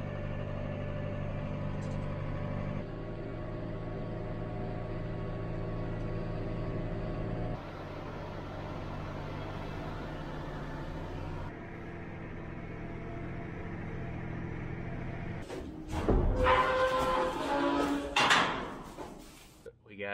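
Steady drone of farm machinery engines heard from inside the cab, first a tractor and then a wheel loader, in short clips that change abruptly several times. Louder, more varied sounds come near the end.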